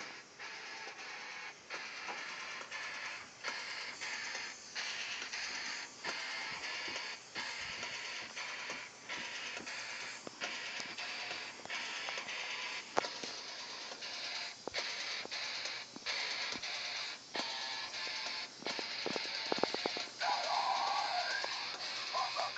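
A band's freshly recorded song played back through studio speakers: a dense, loud mix that runs continuously, with brief regular breaks in the rhythm. Near the end a wavering melodic line rises out of the mix.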